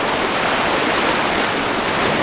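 Ocean surf washing up the beach around the feet: a steady rush of foaming water.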